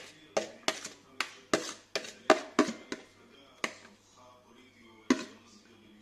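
Sharp knocks of kitchenware against a bowl during salad-making, about three a second for the first four seconds, then one louder knock about five seconds in.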